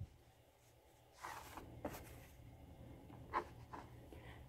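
Faint rustle of cotton fabric being handled and smoothed on a cutting mat, with a few light ticks; it is silent for about the first second.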